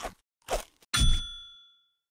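A bright electronic chime for a logo sting: a single ding about a second in that rings out and fades within about a second.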